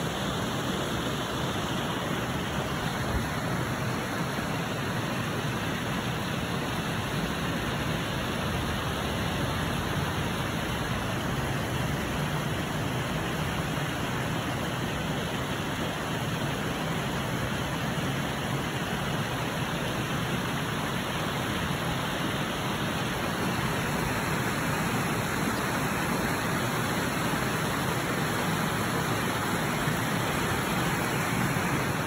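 Steady, even rushing noise without a break, with no goose calls or other distinct sounds standing out.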